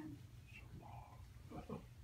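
A quiet room with a low steady hum during a pause in speech, and a faint, brief voice-like sound about one and a half seconds in.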